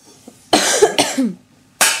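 Upturned stainless-steel cooking pots struck as makeshift drums: three sharp metallic hits, about half a second in, at one second and near the end, the last one ringing on briefly.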